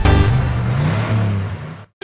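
The tail of an electronic intro jingle with a car engine revving sound that rises and falls in pitch, fading away and cutting off just before the end.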